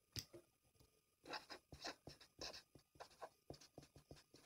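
Faint, irregular scratching and light tapping strokes close to the microphone, one near the start and then a busier run of them from about a second in.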